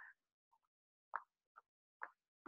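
Near silence, with two faint, very short sounds about a second in and a moment later.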